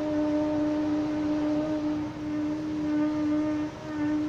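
Steady machine drone at one constant pitch from construction-site machinery, with a brief dip in level near the end.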